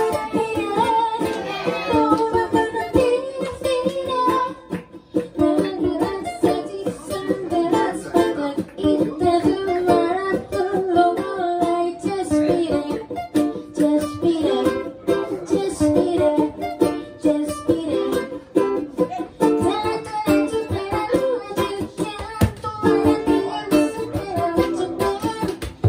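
Two ukuleles playing a song together live, with steady strummed chords and melody notes over them.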